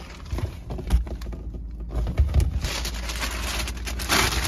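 Handling noise as shoes are taken out of a cardboard shoebox: scattered light knocks and dull thumps, then a steady rustle from about two and a half seconds in.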